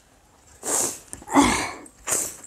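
A woman sneezing, with a shorter, hissy breath just before the main sneeze about a second and a half in.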